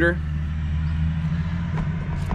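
A steady low hum from a motor or engine running, unchanging in pitch.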